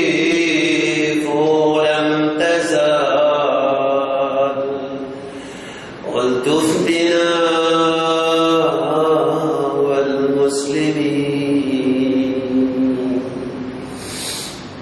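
A man's voice chanting a slow, melismatic Islamic devotional chant in long held notes. Each phrase fades away before a fresh breath, about six seconds in and again near the end.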